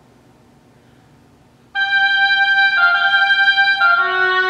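Solo oboe: a rest of about a second and a half with only faint hall sound, then a held high note that starts sharply and steps down to a slightly lower note about a second later.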